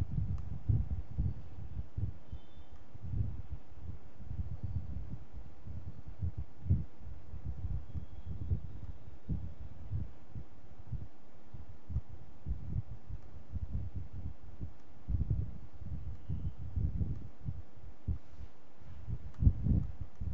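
Muffled, irregular low rumbling and thumping on the lecture's microphone feed, with a faint steady hum underneath, during a fault in the audio. A few sharper knocks stand out, about seven seconds in and again near the end.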